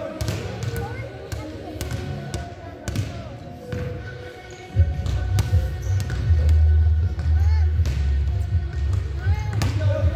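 A basketball being dribbled on a hardwood gym floor, a run of sharp bounces at an uneven pace, with other balls thudding in the background. A low steady rumble comes in about halfway through.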